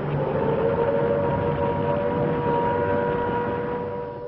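Wartime air-raid siren holding a steady note over a dense rumbling noise, a Blitz sound effect.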